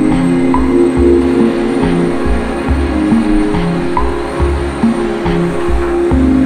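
Background music: sustained tones over a steady low pulse.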